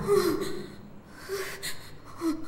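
A person's breath caught in three short, breathy gasps, quiet after loud music dies away.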